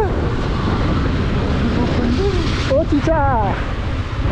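Wind buffeting the microphone: a steady low rumble with a hiss over it, heavier in the first couple of seconds. A man's short exclamation comes near the end.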